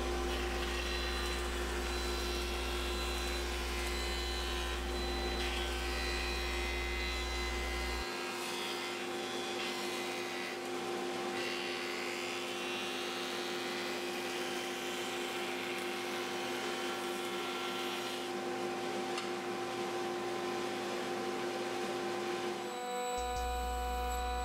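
Delta jointer running steadily, its motor and cutterhead humming as the edges of glued-up bent-lamination strips are fed over it.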